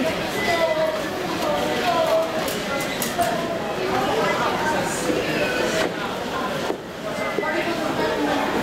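Indistinct talk of people's voices, with a few light clicks and knocks.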